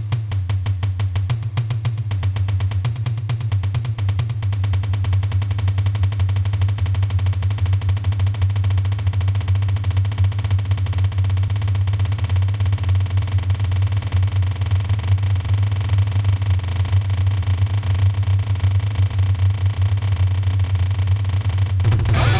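Drum kit played alone: a rapid, continuous double bass drum pattern makes a steady low pounding, with cymbals over it.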